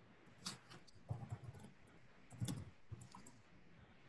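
Faint scattered clicks and soft knocks, a handful over a few seconds, picked up by an open microphone on a video call.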